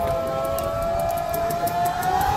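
A long siren-like held tone that rises slowly in pitch, with a fainter higher line above it, over outdoor crowd noise.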